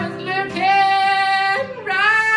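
Harmonica played in a neck rack, long held high notes that slide into and out of pitch, over a strummed acoustic guitar.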